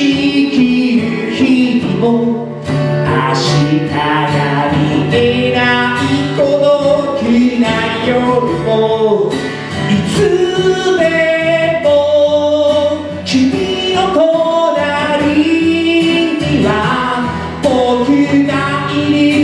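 Live band performing a Japanese song: a male lead singer and a female singer over acoustic guitar and a hand drum.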